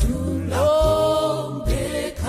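Mixed vocal group of men and women singing a gospel song in harmony, with several voices holding notes together over steady low bass notes.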